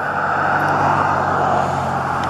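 Road traffic: a steady rush of vehicle noise with a low, even engine hum underneath.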